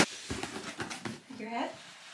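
Faint rustling and light clicks of packaging being handled: a plastic bag and a cardboard box. A brief murmured voice comes in about one and a half seconds in.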